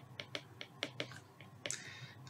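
Stylus tapping and clicking on a tablet while handwriting, a string of faint, irregular clicks.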